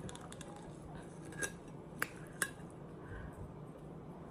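A plastic fork clicking against a plate while cutting a piece of sausage: three light, sharp clicks through the middle over quiet room tone.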